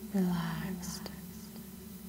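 Only speech: a woman's soft, whispery voice drawing out a single word with a falling pitch, an echo on it, then fading to a faint low hum.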